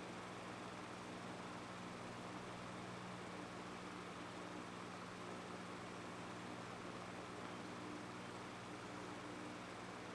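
Electric desk fan running steadily: a faint, even rush of air with a low hum under it.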